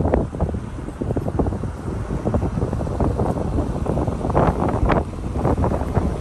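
Wind buffeting the microphone in irregular gusts, with a couple of sharper bursts near the end.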